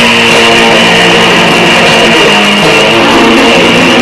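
Grindcore band playing live: a heavily distorted electric guitar riff of held chords that shift pitch every second or so, with bass, very loud and dense.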